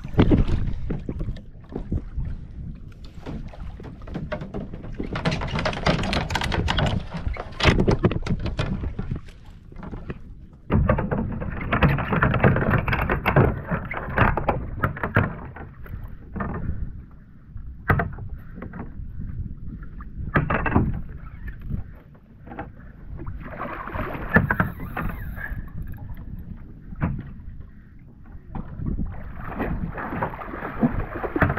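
Sea water sloshing against a fishing kayak and wind on the microphone, coming and going in louder and quieter stretches, with scattered knocks from gear being handled aboard.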